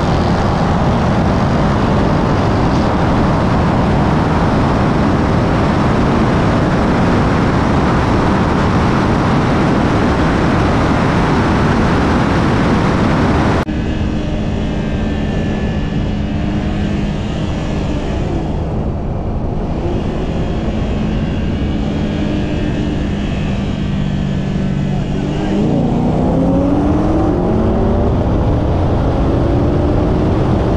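Car engine and heavy wind rush at highway speed, heard from a camera mounted outside the car. After an abrupt cut about halfway through, the engine drones steadily at low speed, then near the end its revs climb sharply as it goes to full throttle for a roll race.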